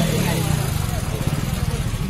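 A vehicle engine idling close by, a rapid, even low pulsing that stands above the background voices.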